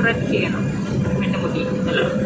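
Voices talking inside a moving car, over the steady low rumble of the car's road and engine noise.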